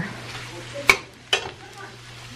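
Spatula stirring and scraping scrambled egg, chicken and sausage around a stainless steel skillet over a sizzle, with two sharp clacks of the spatula against the pan about a second in.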